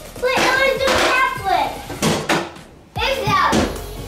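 Children's excited voices, exclamations rather than clear words, with a few sharp knocks about two seconds in.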